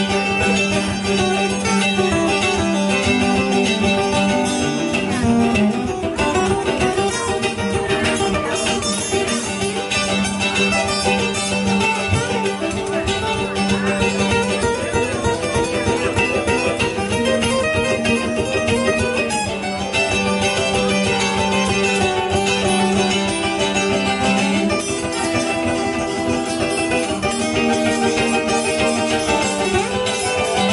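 Instrumental break of an acoustic string trio: acoustic guitar, fiddle and mandolin playing together, with no singing.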